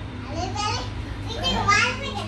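A young girl's high voice in two short excited vocal sounds, one about half a second in and one near the end, over a low steady hum.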